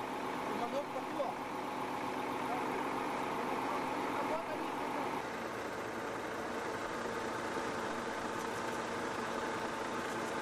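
A steady motor hum, unchanging in pitch, over a constant background hiss. Faint, brief voice-like sounds come and go in the first half.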